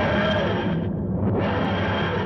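Title-sequence music or sound effect: a loud, noisy rushing swell that comes in two surges, with a dip near the middle.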